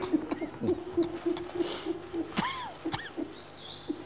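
Several people laughing with their mouths closed, stifled, pulsing laughter with short rising and falling squeaks.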